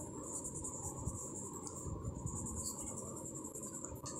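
Soft scratchy rubbing of an oil pastel stick on paper as an area is shaded in, with a steady high-pitched insect trill in the background.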